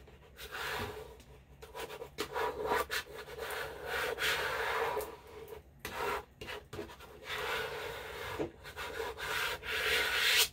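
Handheld plastic scraper rubbed back and forth over a vinyl decal on a stretched canvas, burnishing it down, in irregular scraping strokes.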